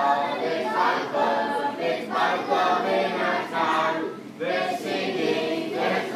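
A group of voices singing a song together.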